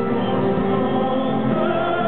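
Live orchestral pop ballad heard from the audience of a large hall: sustained, slow sung vocal lines with full, choir-like voices over string accompaniment.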